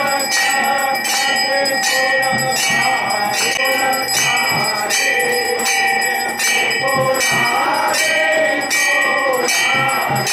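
Brass temple bells struck over and over, about two strokes a second, so that their ringing runs on unbroken beneath the strikes, with voices singing along under the bells.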